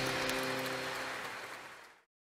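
The last held chord of a choir and its accompaniment dying away, a few steady notes fading out and then cutting off suddenly at the end.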